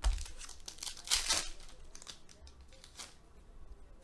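Trading cards and foil card-pack wrappers rustling and crinkling as they are handled, in a few short bursts, the loudest about a second in.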